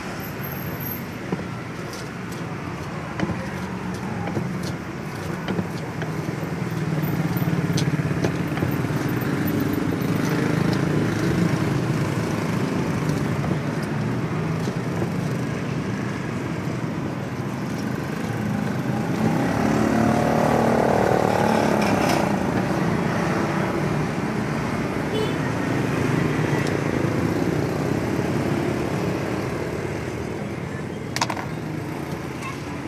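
Steady road traffic with motor vehicles passing, loudest about twenty seconds in, and occasional short knocks of a pestle grinding chilies in a clay mortar.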